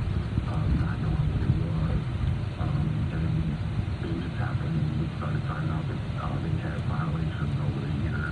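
Steady low rumble of a car's engine and cabin while it sits and creeps forward in slow traffic. Muffled speech from the car radio plays faintly over it.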